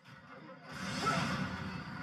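Rushing air and aircraft noise from the film soundtrack, an even roar with no distinct pitch that swells up over the first second and then holds.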